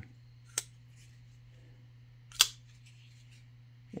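Emerson folding knife blade being worked by hand: a faint metallic click about half a second in, then one sharp, loud snap of the blade and lock near the middle.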